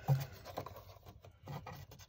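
Faint rubbing and scraping as a tape measure is handled and pressed against foam and foil-taped sheet metal, with a few soft brief knocks.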